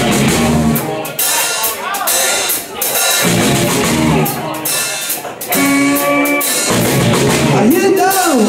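Live blues band playing an instrumental intro: electric guitar, electric bass and drum kit, with a steady drum beat.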